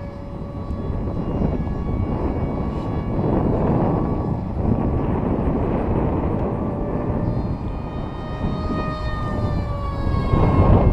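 Small electric motor and propeller of a foam RC park jet whining overhead at a nearly steady pitch, drifting slightly up and down near the end. Heavy wind rumble on the microphone is louder than the whine and swells about a second in.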